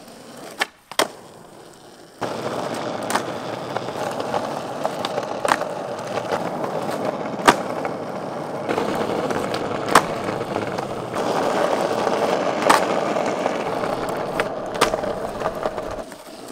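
Skateboard doing flatground tricks on asphalt: the wheels roll steadily from about two seconds in, and sharp cracks of the tail popping and the board landing come every two to three seconds.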